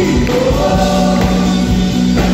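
A live Christian worship band playing: several singers at microphones over drums, electric guitar and acoustic guitar.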